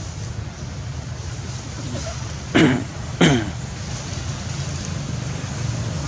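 Two short vocal sounds about two and a half seconds in, each falling in pitch, over a steady low rumble.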